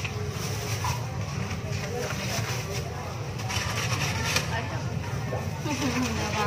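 Market ambience: background chatter of several voices over a steady low hum, with a few light clicks and rustles.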